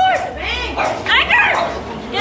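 A small dog yipping and barking repeatedly in short, high-pitched yelps over excited shouting.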